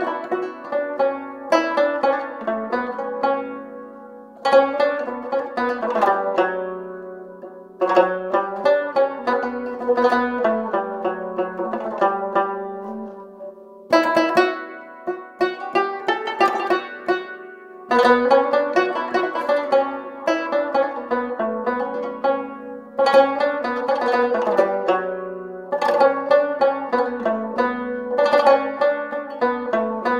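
A rabab plucked in a solo melody, in phrases that each begin with a strong stroke every four to five seconds, with its strings ringing on beneath the notes.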